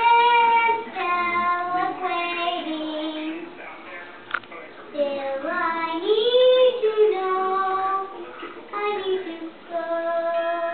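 A young girl singing unaccompanied, holding long notes and sliding up and down in pitch, loudest a little past the middle. A single sharp click sounds about four and a half seconds in.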